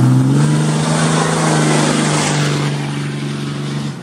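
A 6.7 Cummins inline-six turbo-diesel in a Ram pickup, driving past loud under throttle. Its note rises in the first half-second, then holds steady and fades a little near the end. This is the stock sound, with the grid heater and factory intake manifold still fitted.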